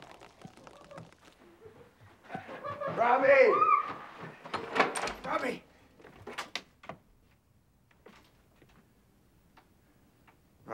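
A man's voice calls out loudly for about a second and a half, followed by a cluster of sharp knocks and bangs of a door, then a couple of fainter knocks.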